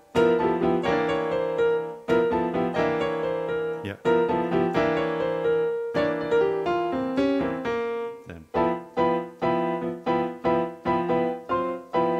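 Jazz piano chords played on a Roland Fantom synthesizer's acoustic piano sound, each chord struck and left to ring. From about eight seconds in the playing turns to short, detached chords, roughly two a second.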